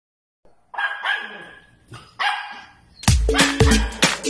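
A dog barking a few times, sharp separate barks in the first half, then music with a heavy bass beat comes in about three seconds in.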